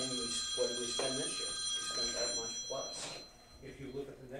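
Men talking over a steady, high-pitched electronic ringing tone that starts suddenly and dies away after about three seconds.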